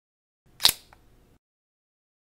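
Camera shutter sound effect: one sharp click about two-thirds of a second in, followed by a faint second tick a quarter of a second later.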